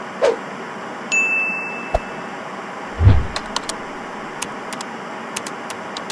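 Outro animation sound effects: a steady static hiss, a short held high ping just over a second in, a low thud about three seconds in, then scattered sharp clicks.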